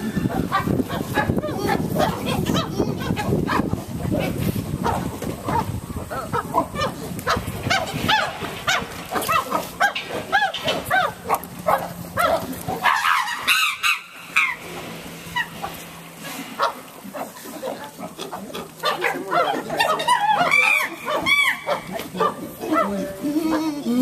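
Chimpanzees calling in a group: runs of short calls that rise and fall in pitch, thinning out a little past the middle and building again near the end.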